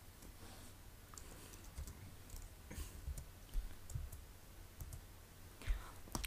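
Faint, irregular clicks of typing on a computer keyboard.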